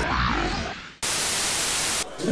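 The echoing tail of a spoken radio-style jingle fades out over the first second. Then a steady burst of hissing static starts abruptly and cuts off just as abruptly a second later.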